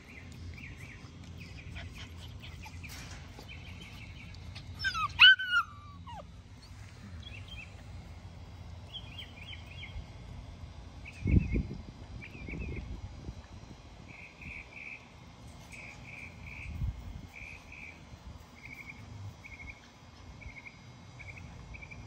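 An American bully puppy gives one loud, high whine that falls steeply in pitch about five seconds in. A low thump comes about eleven seconds in, and faint insect chirping repeats throughout.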